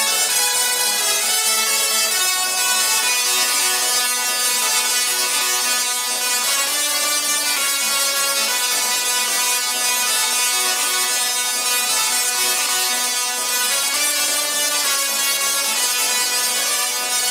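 Three musical dual-resonant solid-state Tesla coils (DRSSTCs) playing a tune together, their sparks sounding the notes. Several notes sound at once and change about every second, at an even loudness.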